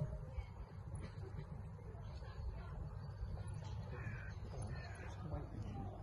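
Outdoor ambience: a steady low rumble with a few short bird calls, about four and five seconds in.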